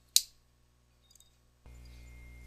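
A single sharp click just after the start, dying away within a fraction of a second, followed by over a second of dead silence. A faint steady electrical hum comes in near the end.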